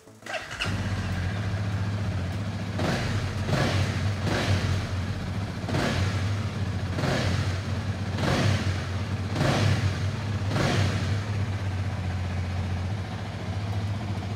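Honda Rebel 300's single-cylinder engine starting about half a second in, then idling steadily with a series of short throttle blips through the exhaust.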